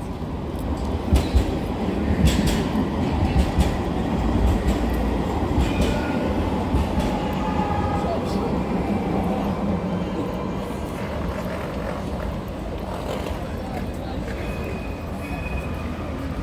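Street tram running past close by on its rails: a steady low rumble with scattered clicks and a faint high whine at times. Passers-by talk.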